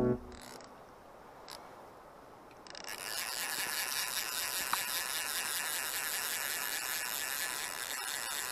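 A music track cuts off just after the start. After a brief lull, a steady rushing hiss of river water begins about three seconds in, picked up by the action camera's microphone as the angler wades the current.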